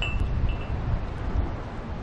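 Wind buffeting the microphone in a steady low rumble, with two short high pings in the first second.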